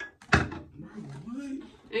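A sharp thump or knock about a third of a second in, with a couple of small clicks just before it, followed by faint low voices.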